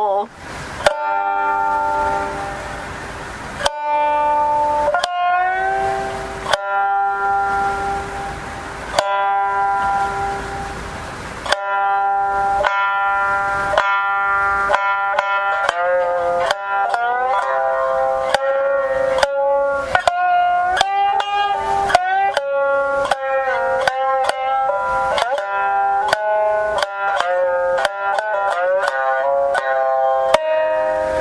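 Jiuta shamisen plucked with a plectrum. Single strikes with sliding pitches come a second or two apart for about the first twelve seconds, then a quicker, continuous run of notes follows.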